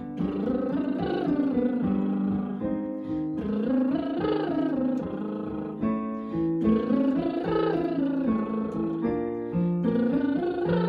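A woman doing lip trills that slide up an octave and back down, about three times, each over piano chords from a digital piano. The chords step to a new key between repeats, as in a rising warm-up exercise.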